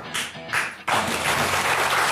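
A short music sting with two quick whooshing hits, then studio audience applause breaks out suddenly about a second in and carries on steadily.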